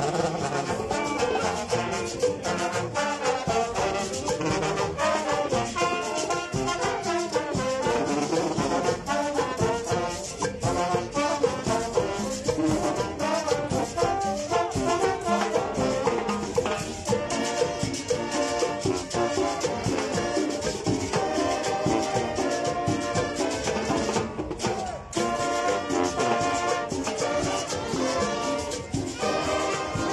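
School marching band playing a lively tune: brass led by sousaphones, with clarinets and a steady drum beat.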